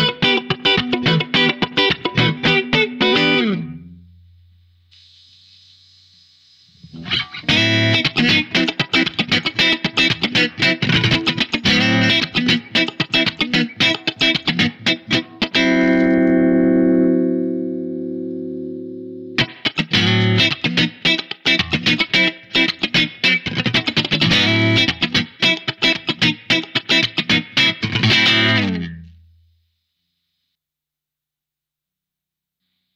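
Electric guitar played through a Ross Compressor pedal: a short run of picked notes, a pause of a few seconds, then longer passages with a chord left ringing and slowly fading about halfway through. The pedal is in its vintage mode at the start and its bright mode from about halfway on.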